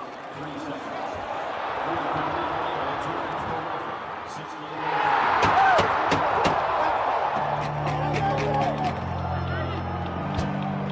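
Ice hockey game sound in an arena: crowd noise with sharp clacks of sticks and puck, the crowd noise rising about five seconds in as the play reaches the net. Music with sustained low notes comes in near the end.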